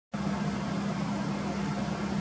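Steady room background noise: a constant low hum with a hiss over it, starting abruptly as the recording begins.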